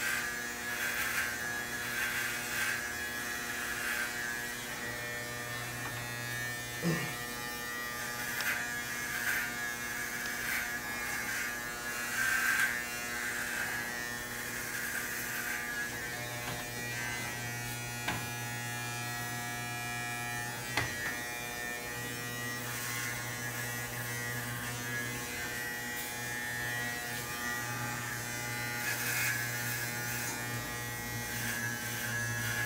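Corded electric hair clippers buzzing steadily as they shave hair from a head, the buzz growing louder and softer in stretches as they work through the hair. A few brief knocks come through.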